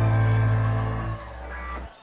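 Live reggae band's closing chord ringing out after a final drum hit, with a low bass note held underneath; it fades steadily and cuts off just before the end.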